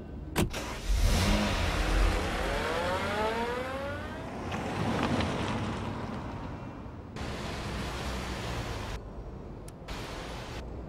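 A car door clunks shut, then the car's engine starts and the car pulls away, its engine note rising as it accelerates, with tyre noise on the wet road.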